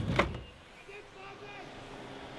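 Faint, distant voices of onlookers calling out, after a brief loud knock or shout at the very start.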